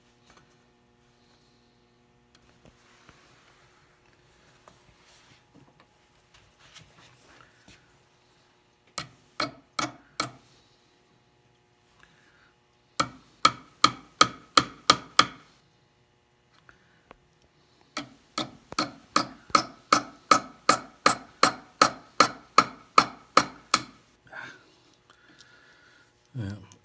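Small hammer tapping little brads into a thin wooden model bowsprit: light ringing taps, about three to four a second, in three runs of about four, eight and twenty strikes, after some quiet handling.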